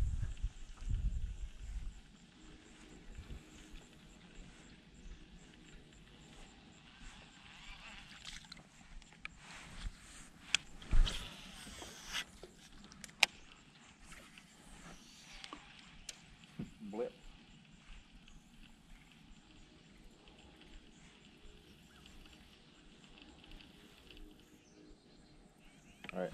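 Quiet background on the water with scattered light clicks and knocks from fishing tackle and the boat being handled, the loudest two sharp knocks about eleven and thirteen seconds in.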